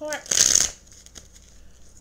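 A tarot deck being shuffled in the hands: one short, loud rustle of cards about half a second in, lasting under half a second.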